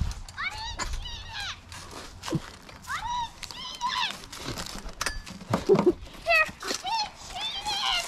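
Children's high-pitched voices calling and shouting without clear words, in three short bursts, with a few clicks and knocks between.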